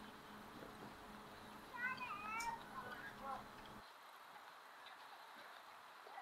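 Seagulls calling: a quick run of short mewing calls about two seconds in, lasting about a second and a half.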